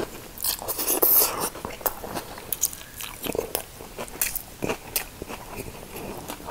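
Close-miked chewing of a fresh shrimp-and-lettuce spring roll: wet mouth sounds with many irregular short clicks, and a denser spell of chewing about a second in.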